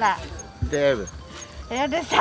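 A woman's voice making three drawn-out, sing-song exclamations, each falling in pitch, with short pauses between.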